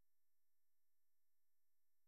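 Near silence: an essentially empty audio track.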